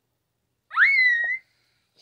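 A girl's high-pitched vocal squeal: one short note that swoops up and holds briefly before cutting off.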